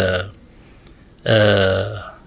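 A man's voice speaking into microphones: a word trails off, there is a pause of about a second, then a long held vowel at one steady pitch that fades, like a drawn-out hesitation sound.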